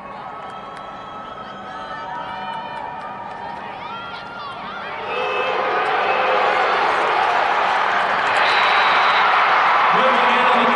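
Football crowd in the stands, scattered shouting voices at first, swelling into loud, sustained cheering about halfway through as a play runs.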